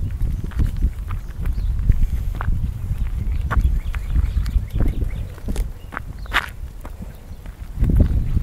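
Wind buffeting a phone's microphone in a steady low rumble, with irregular short clicks and scuffs from footsteps and the phone being handled while walking.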